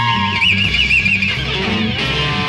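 Live progressive rock band jamming instrumentally, with guitar over a walking bass line; a high note wavers with vibrato for about a second near the middle.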